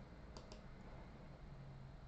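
Two faint, quick clicks about a sixth of a second apart, over quiet room tone.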